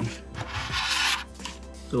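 A phone battery and its flex leads rubbing and scraping briefly as they are slid into place on a brass plate, about half a second in and lasting under a second, over steady background music.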